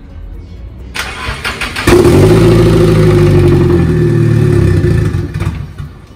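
Freshly swapped Nissan SR engine in a C33 Laurel cranked on the starter about a second in, firing just before two seconds and running for about three and a half seconds before it stalls near the end.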